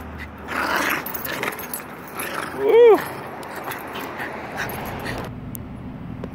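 Yorkshire terrier play-fighting, letting out one short high whine that rises and falls about halfway through.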